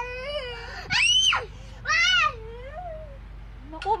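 A young child's high-pitched shrieks and wails: one sharp, piercing shriek about a second in, a shorter cry soon after, then a fainter wavering wail.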